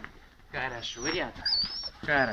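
A short voice-like sound in the middle, then a thin, wavering high chirp near the end from a small bird.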